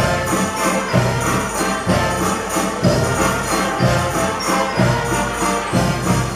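Guggenmusik brass band playing live, brass and percussion together with a steady, regular beat.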